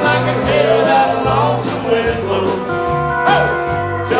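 Live country band playing an instrumental break: a pedal steel guitar plays held notes that slide and bend in pitch over electric guitars, bass and drums.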